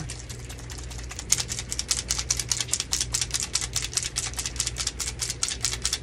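Small needle-tip applicator bottle being shaken, the BB mixing balls inside clicking against its walls in a fast, even rattle of about six or seven clicks a second, starting about a second in. The shaking mixes TLP pigment into alcohol to make an alcohol ink.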